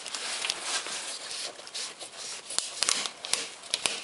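Orange plastic screw cap being twisted off a plastic antifreeze canister: rubbing and scraping plastic, then a run of sharp clicks and cracks in the last second and a half as the cap breaks open.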